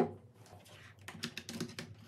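A glass mug set down on a desk with one sharp knock, then about a second later a quick run of keystrokes on a laptop keyboard.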